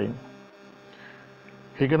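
Steady low electrical mains hum with faint hiss in the recording, between spoken words: a man's voice finishes a word at the start and starts speaking again near the end.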